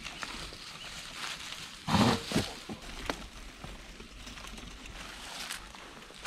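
Mountain bike tyres rolling and crunching over dry fallen leaves and dirt on a steep climb, with scattered small clicks and a short louder noise about two seconds in.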